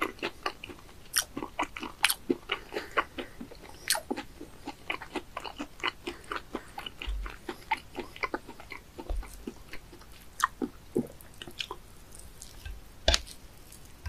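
Close-miked chewing of raw sea bass sashimi: a quick run of short, wet, crunchy clicks that thins out in the second half, with one sharper click about a second before the end.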